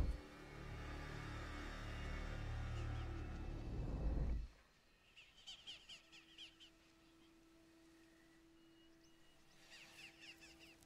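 Orchestral film score played backwards, swelling and then cutting off abruptly about four and a half seconds in. Quiet ambience follows, with faint high chirps, like reversed bird calls, and a faint steady low tone.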